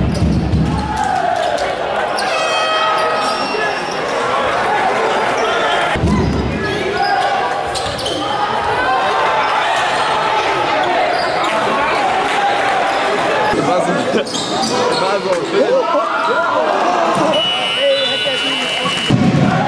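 Live game sound of basketball: the ball bouncing on the court amid players' and spectators' voices, echoing in a large sports hall.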